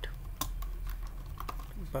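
Typing on a computer keyboard: a handful of separate keystrokes spread over a couple of seconds.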